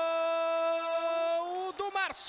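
A sportscaster's voice holding one long, steady note in a drawn-out goal cry of the scorer's name, breaking into a short final syllable near the end.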